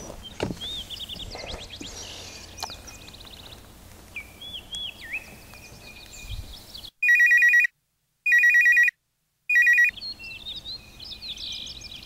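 Electronic telephone ring sounding in three short bursts about seven seconds in, the call ringing through on the other end.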